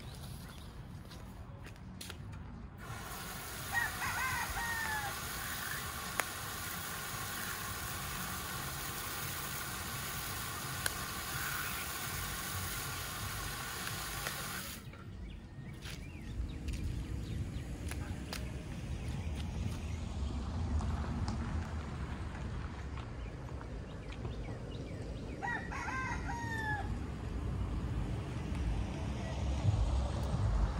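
A rooster crowing twice, about four seconds in and again near the end. Under the first crow there is a steady hiss that stops about halfway through, and a low rumble builds after it.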